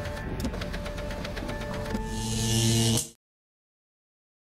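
Sound effects of an animated logo sting over music: a rapid run of ticks, then a louder swell of hiss with a low hum. It cuts off suddenly about three seconds in, and the rest is silence.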